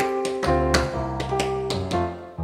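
Instrumental band music: keyboard chords and bass notes over a quick, steady percussion beat, with no vocals.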